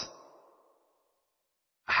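A man's soft outward breath trailing off at the end of a recited phrase, then dead silence for over a second; Arabic recitation starts again right at the end.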